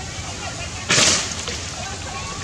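A sudden brief rustling noise about a second in, the loudest sound here, over an outdoor background of faint chirping calls.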